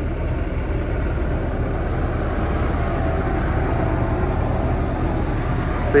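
A truck pulling in close by, its engine running loud and steady.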